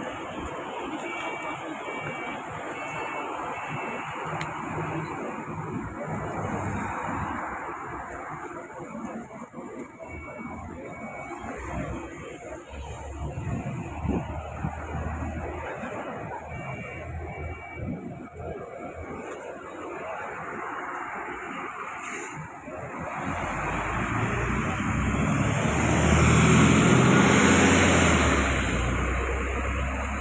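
Steady road traffic noise with a few faint repeated beeps early on. Near the end a large vehicle's engine grows loud as it passes close, plausibly the city bus pulling away from its stop, then fades.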